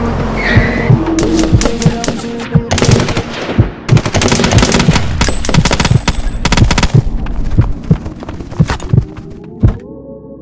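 Rapid bursts of automatic-rifle gunfire over the song's beat. The firing starts about a second in, is densest through the middle, and thins to a few single shots near the end.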